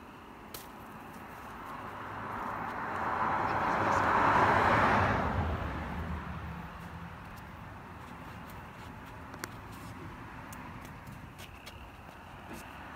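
A car passing by on the road: tyre and engine noise that swells to a peak about four to five seconds in, then fades away.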